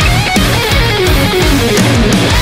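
Heavy metal instrumental: a distorted electric guitar lead playing fast lines with bends and vibrato over driving drums and bass.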